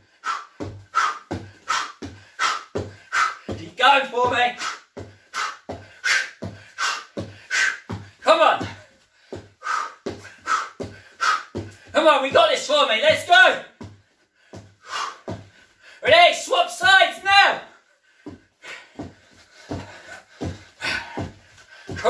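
Knee strikes thrown at a steady pace of about two a second, each one marked by a sharp exhaled breath and the thud of bare feet on a wooden floor. Several stretches of voice come in between, about 4, 8, 12 and 16 seconds in.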